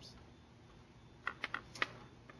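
A quick run of about four sharp clicks, a little over a second in, over quiet room tone.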